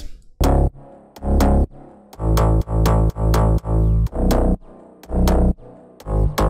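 Layered slap house synth bassline played on its own: a rhythmic run of short, punchy pitched bass notes, about two a second at its busiest, each cut off sharply.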